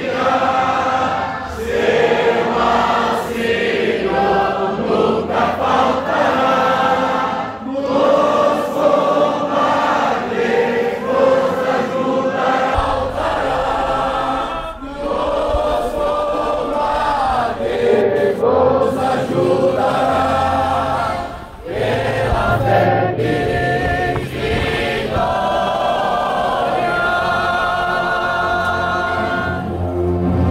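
A large group of voices singing a hymn together, in long held phrases with brief breaks between them.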